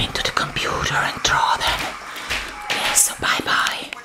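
A person whispering close to the microphone, with a few short clicks between the words.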